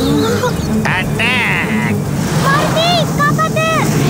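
Animated sound effect of a large swarm of bees buzzing, a dense steady low drone. Short frightened cries from children's voices sound over it: a fast warbling one about a second in, and several brief rising-and-falling yelps near the end.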